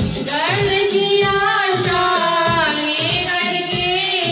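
A woman singing a devotional bhajan to the goddess Kali into a microphone, holding long notes that bend in pitch, over backing music with a steady beat.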